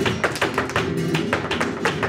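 Flamenco zapateado: a bailaor's shoes striking a wooden stage floor in a fast run of strikes, about six a second, over flamenco guitar.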